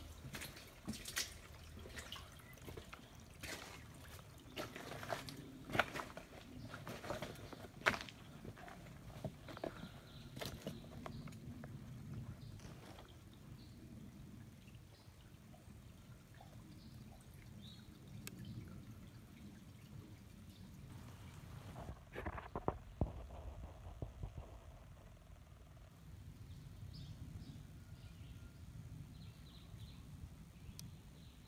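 Shallow water trickling over rocks, with sharp drips and knocks that come thickest in the first dozen seconds and again in a short cluster about 22 seconds in.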